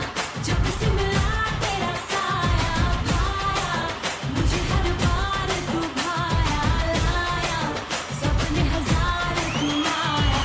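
Indian film-style pop dance song: a voice singing a melody over a steady, heavy beat.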